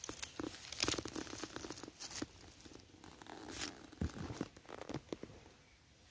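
Dry leaves rustling and crackling in a string of short crackles, loudest about a second in and dying away near the end.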